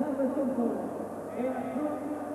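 Speech only: a man's voice talking, as from a TV commentator.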